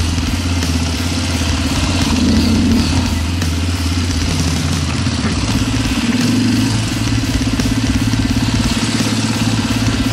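Single-cylinder four-stroke KTM dirt bike engine running at low speed on a trail, its note rising and falling a little with the throttle and shifting lower about four seconds in.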